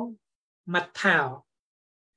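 Speech only: a man's voice says a short word or two in Khmer, with complete silence between the phrases.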